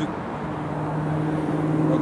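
A passing motor vehicle's engine: a steady, even-pitched hum that comes in about half a second in and grows slowly louder.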